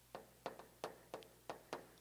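Chalk tapping and clicking on a chalkboard as a word is written: about six short, faint taps, one for each stroke.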